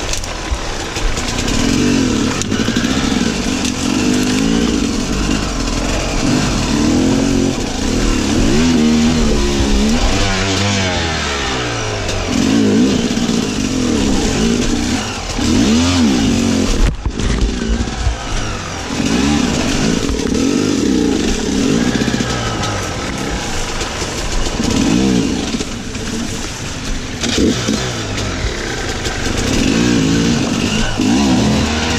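Sherco enduro motorcycle engine revving up and down in short repeated bursts as it is ridden slowly over rocks and through brush. There is a brief break a little past halfway.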